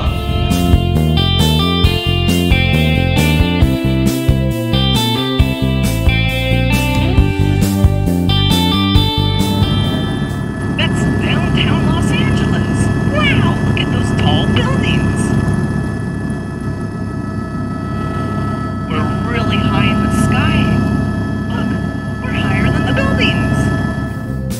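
Upbeat background music with a steady beat for about the first ten seconds. It gives way to the steady rumble of a helicopter in flight, heard from inside the cabin, with brief voice-like sounds over it.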